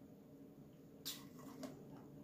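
Faint sipping of a drink through a plastic straw from a plastic cup, with two short breathy, airy sounds a little after a second in, over low room hum.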